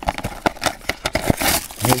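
A small paperboard retail box for a phone case being opened by hand: a string of light taps, clicks and scrapes as the lid is worked off.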